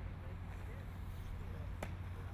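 Faint, distant murmur of people talking, over a steady low rumble, with a single sharp click near the end.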